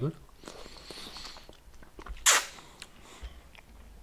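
Quiet handling of a small plastic candy jar and its snap-on plastic cap, with one sharp plastic click a little over halfway through.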